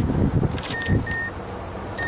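Two short, high electronic beeps from a car's dashboard warning chime, about a second in, after low rumbling thumps in the first second.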